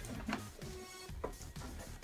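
Small knife slitting packing tape on a cardboard box: quiet scratching with a few light clicks, over faint music.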